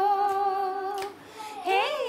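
A woman singing unaccompanied in a Nepali folk style. She holds one long steady note, then after a short break sings a rising 'he' near the end.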